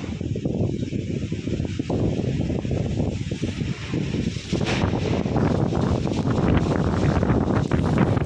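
Gusty storm wind buffeting the phone's microphone in uneven low rumbles, growing stronger and harsher about halfway through.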